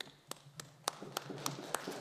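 Sparse hand clapping from a few people, evenly paced at about three claps a second, applause at the end of a speech.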